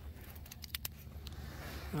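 A few light, sharp clicks of hand-handling while a small bluegill is being unhooked, over a steady low rumble.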